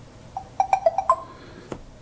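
Tablet notification chime, a quick run of short high electronic notes, as the Bluetooth pairing request comes up. A single click follows near the end.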